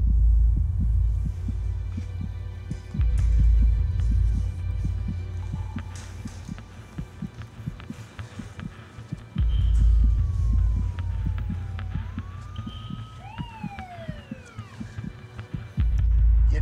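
Tense trailer sound design: a deep boom hits every few seconds and dies away, over a quick, even pulse of low ticks. Near the end a siren wails, rising and falling a few times.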